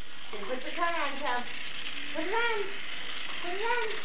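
A battery-powered toy car running along a flexible plastic race track, a steady high whir with fine rapid ticking, under several high-pitched calls from small children.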